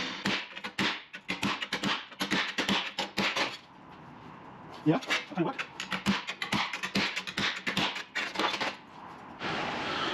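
Hammer striking a cold chisel held on a strip of sheet steel on a steel workbench, in a quick run of sharp blows, several a second, that pauses about four seconds in and then starts again. The blows put a line of dents into the panel so that it will bend there.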